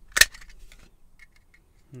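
A sharp plastic snap about a fifth of a second in as the snap-fit case of a small PWM solar charge controller is pried open, followed by a few faint clicks of the plastic parts.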